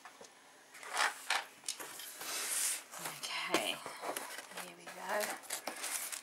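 A white cardboard box being handled by hand, its flaps pulled open with a run of short scrapes, taps and paper rustles. A soft voice murmurs briefly twice.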